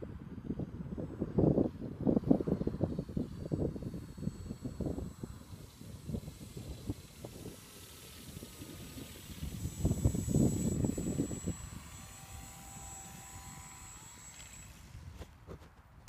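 Gusts of wind buffeting the microphone, with the thin, steady high whine of a battery-powered model autogyro's electric motor and propeller flying overhead.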